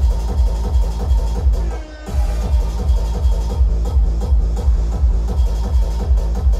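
Loud electronic hardcore dance music played over a festival sound system: a heavy kick drum pounding about three times a second, with a short break in the beat about two seconds in before it comes back.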